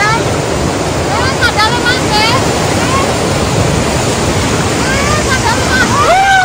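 White water rushing over the rocks of a river rapid, a steady loud wash of noise heard from a raft riding through it.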